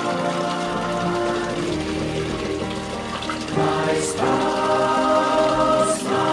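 A choir singing a slow hymn in held, sustained chords, swelling louder about three and a half seconds in.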